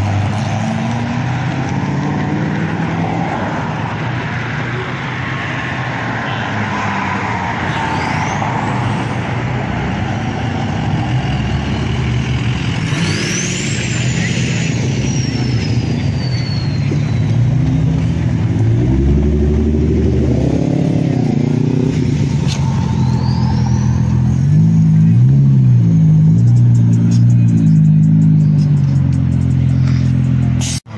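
Car engines running and revving as cars drive past, the engine pitch rising and falling, with stronger revving about twenty seconds in and again near the end.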